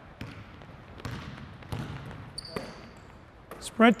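Basketball being dribbled on a hardwood gym floor: several irregular bounces, with a short high squeak, like a sneaker on the floor, about two and a half seconds in.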